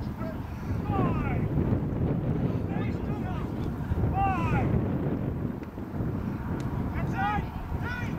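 Wind buffeting the microphone in a steady low rumble, with short distant shouts about a second in, near three and four seconds, and again near the end.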